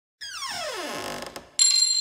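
Electronic logo sting: a falling, pitched sweep for about a second, then, about one and a half seconds in, a sudden bright ringing chime with high sustained tones that slowly fades.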